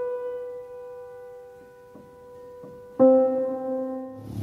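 Piano intro jingle: a held note rings and slowly fades, with a few soft notes under it, then a new chord is struck about three seconds in.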